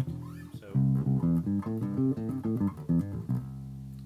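Electric bass guitar playing a blues scale: a held low note, then a quick run of single plucked notes, ending on a sustained note that fades.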